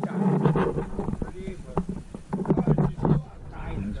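Small tractor engine running loudly, its low rumble coming up suddenly at the start, with people talking over it.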